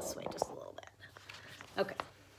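Paper rustling as a picture book's page is handled and turned, with a short, sharper rustle near the end.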